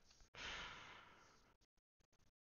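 A man's soft, breathy sigh close to a headset boom microphone, fading out over about a second.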